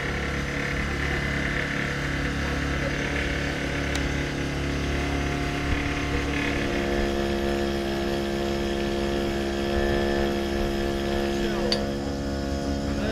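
A motor running steadily, its tone changing about six and a half seconds in, with people's voices in the background.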